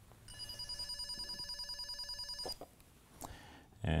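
Greenlee NETcat Pro 2 (NC-500) cable tester sounding one of its four tracing tones, its second: a high electronic tone that warbles rapidly for about two seconds and then stops, followed by a faint click.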